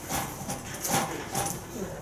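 Felt whiteboard eraser wiped across a whiteboard in several strokes, each a short rubbing swish, with brief squeaks on a couple of them.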